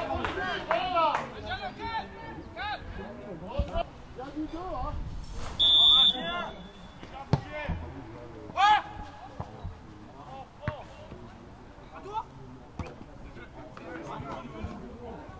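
Players' shouts and calls across a football pitch, with a short, loud, high-pitched referee's whistle blast about six seconds in and a few sharp thuds of the ball being kicked.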